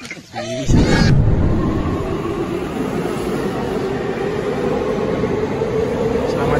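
Subway train noise on an underground platform: a loud, steady rumble cutting in abruptly about a second in, with a motor hum that slowly rises a little in pitch.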